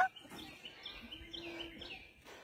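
Faint bird chirps: a few short calls. A faint steady low tone sounds for under a second about halfway through.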